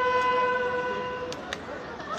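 A brass instrument of a ceremonial band holding one long steady note that fades away over about a second and a half, followed by a quieter lull with a couple of faint clicks.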